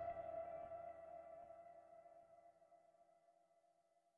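Last guitar chord of a song ringing out, its sustained notes fading away to silence over about three seconds.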